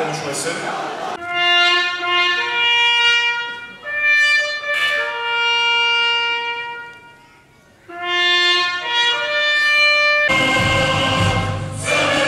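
A solo trumpet plays a slow ceremonial call of long held notes over the hall's loudspeakers, pausing briefly before resuming. Near the end, fuller band music starts.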